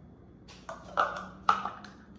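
Measuring cups clinking against each other as they are handled and sorted: a few light clinks with a short ring, the two loudest about a second and a second and a half in.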